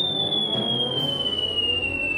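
Cartoon falling-whistle sound effect: a single high whistle gliding slowly and steadily down in pitch, the sign of something dropping out of the sky.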